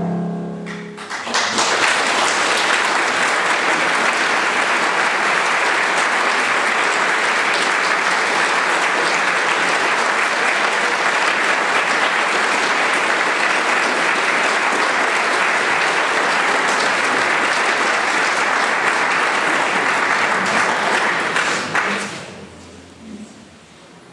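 A grand piano's final chord dies away, and then a concert audience applauds. The applause starts about a second in, holds steady for about twenty seconds, and fades just before the end.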